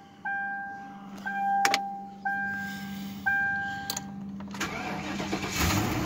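Dashboard warning chime dinging four times, about once a second, with the ignition on. Near the end the starter cranks and the 2003 Ford Crown Victoria's 4.6-litre V8 catches on a cold start.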